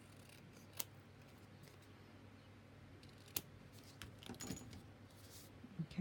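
Scissors trimming a paper tag: a few faint, separate snips, two of them sharper, about a second in and just past the middle, with a light rustle of paper near the end.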